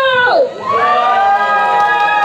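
Drawn-out voices: a long call falling in pitch in the first half-second, then a long held cheer from several voices that falls away at the end.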